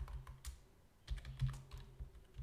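Typing on a computer keyboard: irregular keystroke clicks, with a short pause about halfway through.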